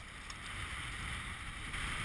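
Steady wind rumble on the microphone over choppy water lapping at the boat and landing net.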